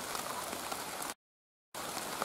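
Steady rain falling, an even hiss of drops. It cuts out completely for about half a second just past the middle.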